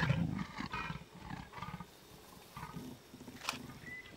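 Leopards growling and snarling as their mating breaks off. The growls fade over the first second, with a couple of softer growls after that. A single sharp click comes about three and a half seconds in.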